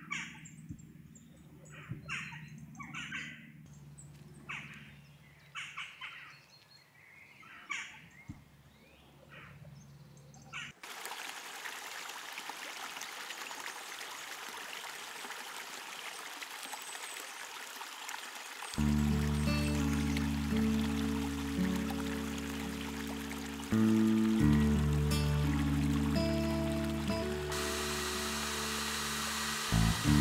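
Songbirds chirping for about the first ten seconds, then the steady rush of running water from a small forest stream; background music comes in over the water a little past the middle.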